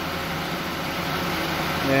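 Car engine idling under the open hood, a steady running noise with a low hum, while refrigerant is being charged into the AC system.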